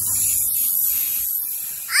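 Small remote-control toy helicopter's electric motors and rotor running at full speed as it lifts off and climbs: a steady high whine with rushing air from the blades, easing a little towards the end. A child's short shout comes at the very end.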